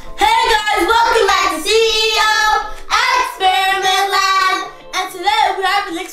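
Children's voices singing out a sing-song phrase in three long, drawn-out stretches, breaking into shorter, quicker syllables near the end.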